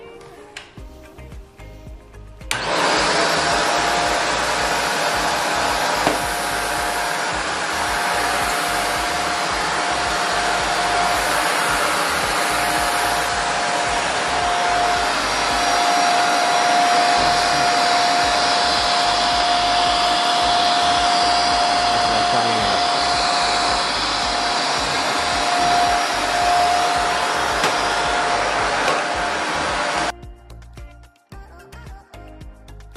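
Shark Navigator upright vacuum cleaner switched on about two and a half seconds in, its motor coming up at once and then running loud and steady with a constant whine, until it cuts off at the very end.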